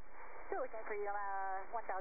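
A voice transmission over the helicopter's radio, heard through the intercom with a thin, narrow sound, starting about half a second in.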